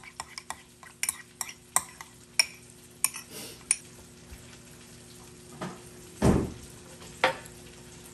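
Metal fork stirring ricotta in a small ceramic bowl, clicking and scraping against the bowl in a quick irregular run of sharp clinks over the first few seconds. A louder, duller thump comes about six seconds in, followed by one more click.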